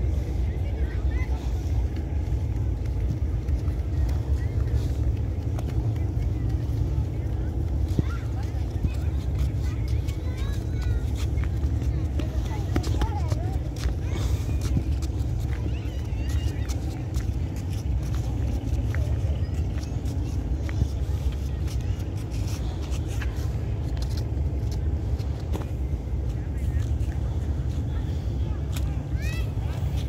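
Steady low rumble with faint distant voices and scattered light clicks.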